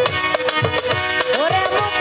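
Instrumental interlude of live Bangladeshi baul folk music: hand drums beating a steady rhythm, each stroke's low note falling, under a melody line of held and sliding notes, with no singing.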